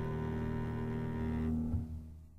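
Final held chord of a jazz quartet of saxophone, piano, double bass and drums, closing the piece. The upper notes drop away about three-quarters of the way in, a low thump sounds just after, and the sound begins to die away.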